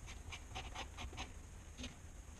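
Glue brush stroking across the leather of a shoe upper's heel: a quick series of faint, scratchy strokes.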